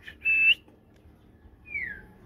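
A person whistling to get a dog's attention: a short steady high whistle that flicks upward at its end, then a single falling whistle near the end.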